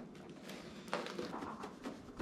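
Fish pieces being shaken in seasoned flour inside a lidded plastic food container, giving faint knocks and a few soft taps.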